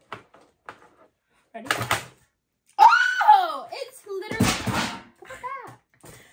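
Young women's voices: a loud, high exclamation with a bending pitch about three seconds in, then a loud breathy burst and a short laugh-like sound near the end.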